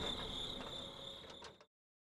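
Crickets trilling steadily in a faint high-pitched night ambience, fading down and cutting off abruptly to silence near the end.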